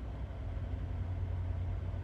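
Steady low hum of an idling vehicle engine, heard from inside the cab.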